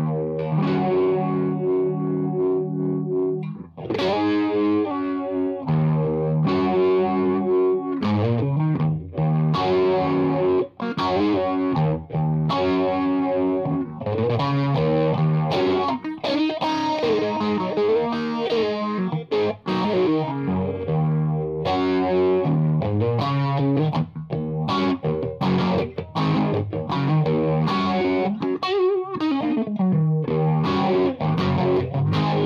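Fender American Deluxe Stratocaster played through an effects pedalboard with a distorted tone: improvised lead lines with string bends and sustained notes, in phrases broken by short pauses.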